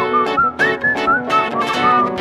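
Recorded pop song: a whistled melody gliding up and down over strummed guitar chords and a steady beat.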